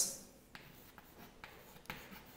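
Chalk writing on a blackboard: faint, scattered taps and scrapes of the chalk stick as characters are written.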